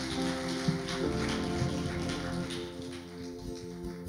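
Soft, sustained keyboard chords held under the pause, changing chord about a second in.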